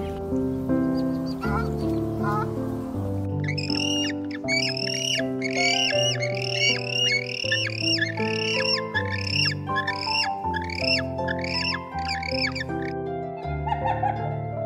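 Soft instrumental background music throughout. From about three seconds in, a bird calls in a long run of short, arched squawks, about two a second, stopping shortly before the end.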